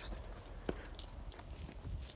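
A hand brushing through the fine foliage of a Mexican marigold shrub: faint rustling of leaves, with a few soft clicks.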